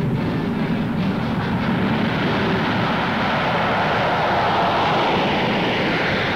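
B-52 Stratofortress's eight turbojet engines at takeoff power as the bomber rolls and lifts off, a steady jet noise that turns brighter and higher toward the end.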